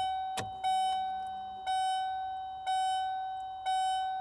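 1996 Ford Mustang's dashboard warning chime dinging about once a second, each ding fading into the next, with the ignition switched on and the engine off. A click comes just before the first ding, and a faint low hum runs for about a second.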